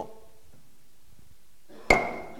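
Auctioneer's gavel struck once near the end, a sharp knock with a brief ringing note after it. This is the hammer falling to mark the lot as sold.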